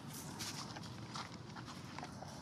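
Long-tailed macaques moving over tree roots and dry leaf litter close by: a few short, irregular scuffs and rustles of hands and feet.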